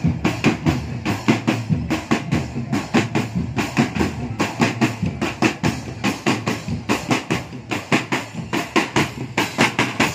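Marching drum band beating a fast, even rhythm on marching snare drums and bass drums, the strokes close together and regular; the drumming breaks off at the very end.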